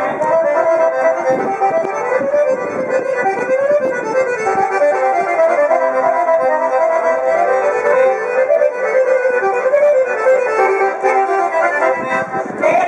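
Piano accordion playing a quick-stepping Bulgarian folk melody on its own, an instrumental passage between the group's sung verses.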